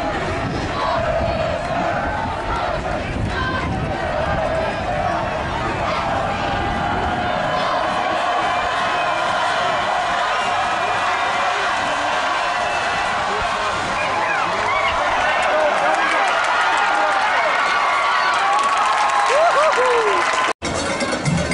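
Crowd in the stands at a high school football game, many voices shouting and cheering over each other, a little fuller in the second half.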